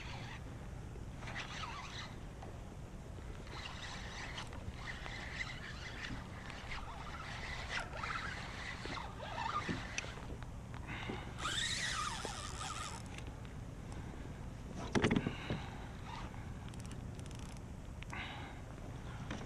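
Steady low rumble of wind and water around a kayak, with scattered scraping and creaking from the fishing rod and reel while a striped bass is being played, and one sharp knock on the kayak about 15 seconds in.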